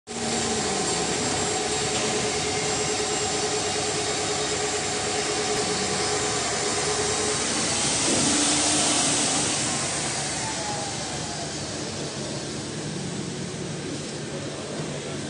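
Roll forming machine running: steel strip feeding off a coil and through the forming roller stations, a steady mechanical running noise with a motor hum. It grows louder and hissier about eight seconds in, then eases, with a tone falling in pitch.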